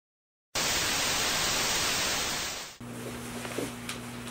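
A loud burst of static-like hiss, about two seconds long, fading out. It gives way to quieter room sound with a steady low electrical hum and a couple of faint clicks.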